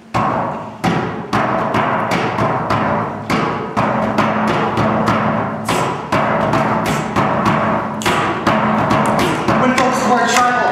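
Backing beat for a rap kicks in suddenly: drums hitting about twice a second over a steady low bass tone.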